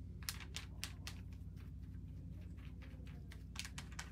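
Irregular light clicks and taps of a tint brush pressing hair colour through a clear plastic film over a mannequin's hair. The clicks bunch together shortly after the start and again near the end, over a faint steady low hum.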